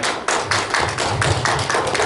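Hands clapping in a steady rhythm, about four to five claps a second.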